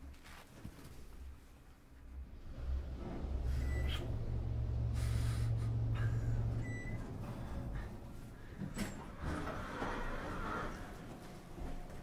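Close-up sounds of two people kissing and embracing: low rustling and rumbling of clothing and movement near the microphone, strongest in the middle, with a few soft lip smacks and breathing.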